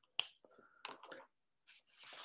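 Felt-tip pens being handled: one sharp click about a fifth of a second in, then a few fainter clicks and ticks.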